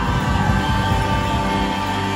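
Live country-rock band playing through the PA: drums and bass under a long held guitar note, with the drums thinning out near the end.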